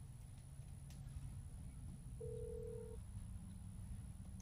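A single steady electronic beep from a smartphone held at the ear, lasting under a second and starting about two seconds in: a phone call-progress tone. A faint low hum runs underneath.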